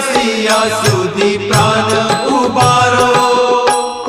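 Hindu devotional hymn: a sung vocal line over a low sustained drone and a steady drum beat.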